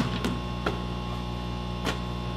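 A steady electrical mains hum runs under a few short, sharp knocks as a basketball is shot. There is one knock at the release, two lighter ones, and a louder one near the end.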